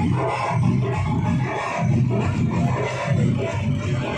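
Loud music with a steady, heavy beat.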